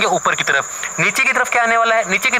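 A person talking through a lesson, with a faint steady high-pitched whine running behind the voice.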